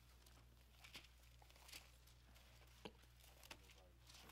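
Near silence: room tone with a steady low electrical hum and a few faint, scattered ticks.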